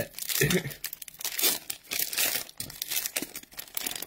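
A Magic: The Gathering draft booster pack's foil wrapper being torn open by hand, crinkling and tearing in a dense run of irregular crackles.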